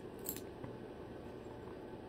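Cockatoo's beak picking through paper bills and chewed scraps: one short crinkle about a quarter second in, then only faint ticks over low room noise.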